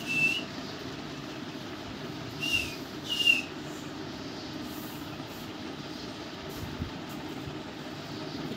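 Alexandrine parakeet giving three short whistles, each a single slightly falling note: one at the start, then two close together around two and a half to three seconds in. A steady background hum runs under them.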